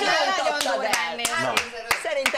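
A few sharp, separate hand claps, about six in just over a second, starting about half a second in, over lively talk.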